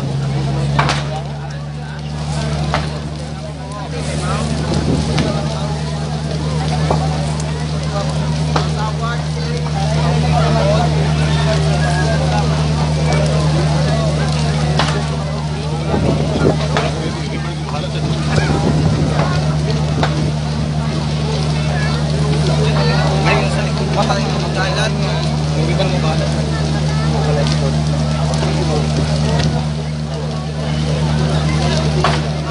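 A steady engine drone running without change, with a crowd talking and calling over it.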